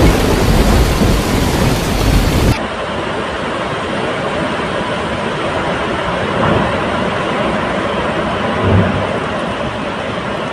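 Tornado winds rushing and buffeting a phone microphone, a loud rumbling noise with heavy low-end. About two and a half seconds in it cuts to a quieter, steady rush of wind.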